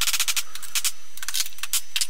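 Quick clusters of light, sharp metallic clicks and rattles as a drilled copper bus bar is handled in a steel bench vise, over a steady hiss.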